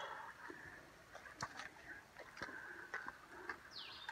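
Faint footsteps on a wet, muddy trail, soft ticks about once a second, and a short falling bird call near the end.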